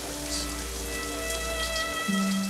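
Shower water spraying steadily onto a person huddled beneath it, with soft held notes of music over it.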